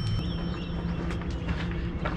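The tail of a bell-like 'ding' sound effect rings out and fades away within the first second. Under it runs a steady low rumble with a faint hum.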